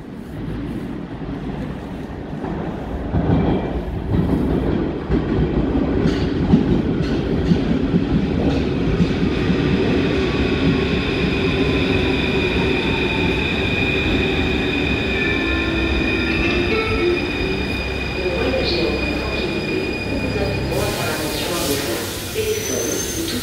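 Paris Métro train pulling into an underground station. Its rumble builds over the first few seconds, then a high-pitched squeal and a falling whine come in as it brakes to a stop, with a sudden hiss near the end.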